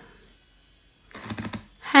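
Quiet for about a second, then a quick cluster of light clicks and taps, several in a row, before speech resumes.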